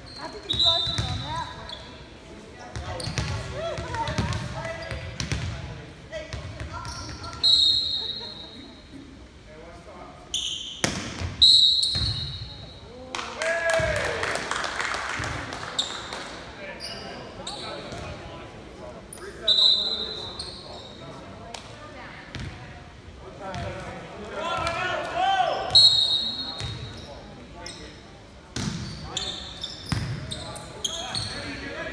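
Indoor volleyball play: a referee's whistle blows about five short blasts, the ball is struck with sharp smacks between them, and players and spectators shout and cheer at the end of rallies, loudest around the middle and near the end.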